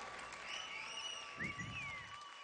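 Quiet lull between songs in a concert hall: faint audience murmur with a few thin, high gliding calls, like light whistles from the crowd.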